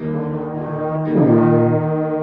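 Student brass ensemble of trombones and a tuba holding a loud sustained chord, with a pitch glide sweeping downward about a second in.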